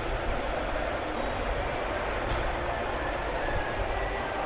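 Steady background noise: a low rumble under an even hiss, with no distinct events.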